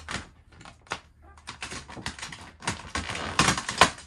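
Sheet of glossy car-wrap vinyl film crackling and crinkling in quick, irregular bursts as it is pulled up and stretched by hand over a car's rear bumper, loudest near the end.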